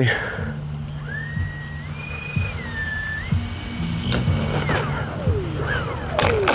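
Twin 70 mm electric ducted fans of an FMS A-10 Thunderbolt II V2 model jet whining on landing approach, the pitch stepping up and down with throttle changes. About five seconds in, the whine slides steeply down as the throttle is cut for the landing, with a couple of sharp knocks around then.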